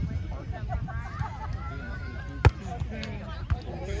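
A volleyball struck by a player's arms or hand, one sharp slap about two and a half seconds in, with a few fainter hits, over distant voices and chatter.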